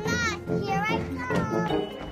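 A young girl's excited, high-pitched voice in three short wavering calls, over soft background music.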